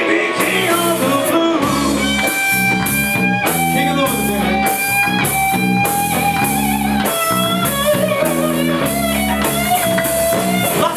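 Live blues-rock band playing, with an electric guitar carrying the lead in long, slightly bent notes over bass and drums.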